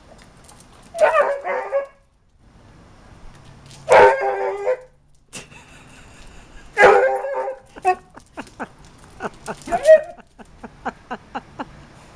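Basset hound barking at a chicken: three loud, drawn-out barks a few seconds apart, followed by a quicker run of shorter, quieter yaps.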